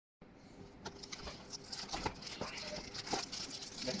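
Cardboard phone box being opened and a phone in a clear plastic bag pulled out: crinkling plastic and scraping cardboard with a run of small clicks, busiest near the end.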